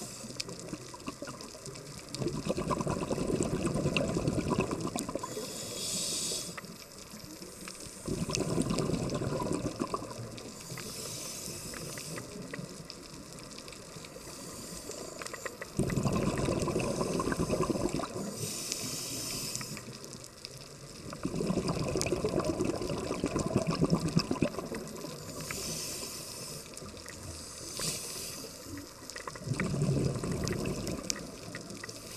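Scuba diver breathing through a regulator underwater: a short hiss on each inhale, then a longer rush of exhaled bubbles, repeating every few seconds.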